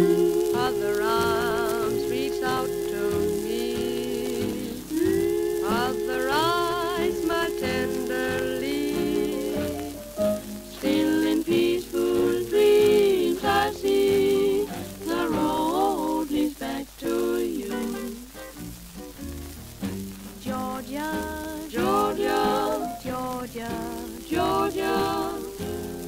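Small swing band on a 1942 shellac 78 rpm recording playing a slow passage: long held melody notes with vibrato over piano, guitar, bass and drums. The record's steady surface crackle and hiss run underneath.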